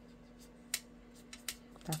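Quiet room tone with two light, sharp clicks from craft tools being handled on a work mat, the first about three-quarters of a second in and the second about half a second later; a woman's voice starts just at the end.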